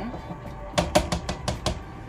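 Serving spoon knocking against the side of a pan while mashed potatoes are stirred hard: a quick run of about seven sharp knocks within about a second.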